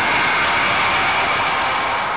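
Closing of an electronic dance track: the beat stops and a dense, noisy synthesizer wash with a steady high tone is held.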